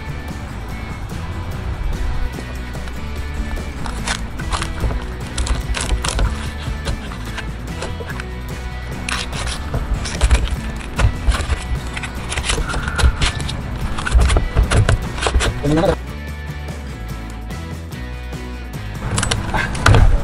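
Background music runs throughout. Over it, a large knife cuts and cracks through a lobster's shell on a wooden cutting board, giving irregular sharp cracks and knocks that are thickest in the middle of the stretch.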